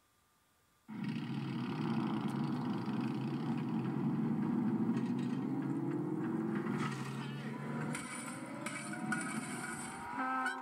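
Soundtrack of a VHS film opening played through a TV: after a silent logo, a loud, steady rushing noise starts suddenly about a second in and runs on with slowly rising tones.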